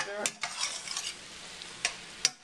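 A spoon stirring and scooping sliced zucchini and summer squash in a stainless steel sauté pan, clicking against the pan a couple of times, over a faint sizzle from the still-hot pan.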